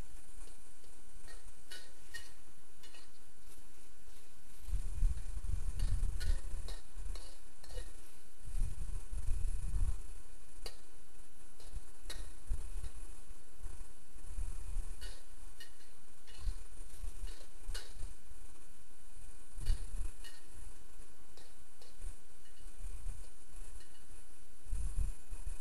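Metal ladle and wok spatula clinking and scraping against a wok, with scattered irregular clicks and a few dull knocks, while kimchi and rice cakes are stirred as their sauce cooks down.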